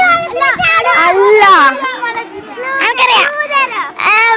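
Speech: children's high-pitched voices talking.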